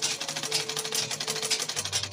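South China manual sewing machine running and stitching doubled fabric: a fast, steady clatter of needle and mechanism, with background music over it.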